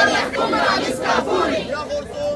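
Crowd of demonstrators shouting together, many voices at once, loudest at the start.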